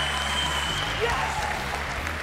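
Studio audience applauding steadily, with a few voices calling out in the crowd.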